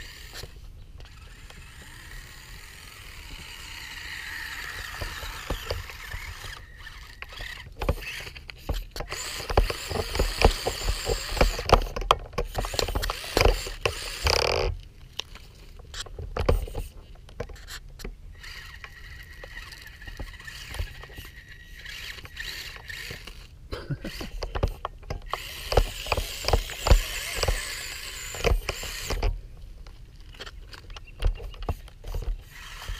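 Losi Micro 1:24 rock crawler's small electric motor and geartrain whining in spurts as it crawls over rocks, the pitch rising as it speeds up a few seconds in. Frequent clicks and knocks of tyres and chassis on the stones, with low thumps on the microphone.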